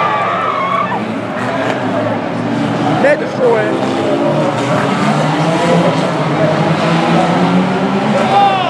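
Several banger-racing cars' engines running hard under load, with tyres squealing and skidding on the track and a sudden knock of contact about three seconds in.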